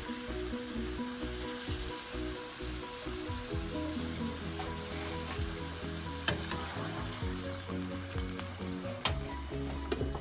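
Potato fries sizzling in hot oil in a frying pan as they are lifted out with tongs, with a few sharp clicks about six, nine and ten seconds in from the tongs against the pan. Background music plays underneath.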